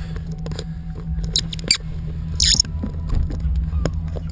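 A steady low rumble inside a pickup truck's cab, the GMC's engine running. Over it come scattered clicks and short rustles of a handheld camera being moved about, the sharpest about two seconds in.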